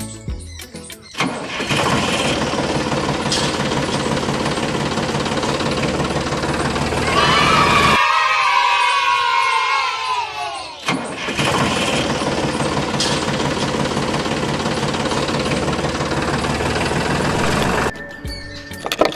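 Engine sound of a tractor running steadily, with an even drone. About seven seconds in, the low rumble drops out while a higher sound sweeps downward in pitch for about three seconds, then the steady running returns.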